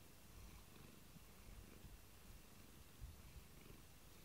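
A domestic cat purring faintly and steadily, close to the microphone.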